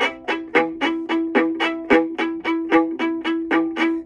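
Viola playing a quick, even run of short bowed notes, about four a second, with one note recurring under the others throughout. It is a demonstration of a down-up-up bowing figure.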